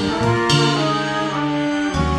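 Instrumental intro of a soul track: a horn section holding sustained chords over upright bass, with a cymbal crash about half a second in.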